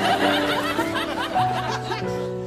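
Men laughing and chuckling over the song's instrumental backing track, whose held notes run on beneath them.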